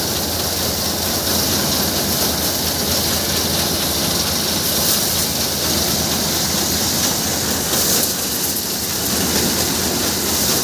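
Tractor-driven paddy thresher running: the tractor's engine turns the thresher's drum through a PTO shaft, making a loud, steady, unbroken machine noise.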